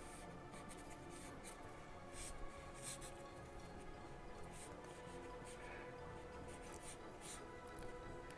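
Charcoal pencil scratching across drawing paper in quick, irregular strokes as a figure is sketched, faint over soft background music.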